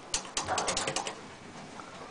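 Elevator car call buttons on a vintage Otis Lexan operating panel clicking as they are pressed: a quick run of sharp clicks in the first second.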